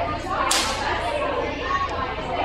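A sudden sharp swishing noise about half a second in, fading over about a second, over the chatter of a crowd of people.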